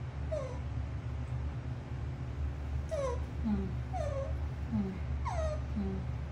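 Baby macaque giving short high cries that each slide down in pitch: one near the start, then a quick run of about six in the second half. A steady low hum runs underneath.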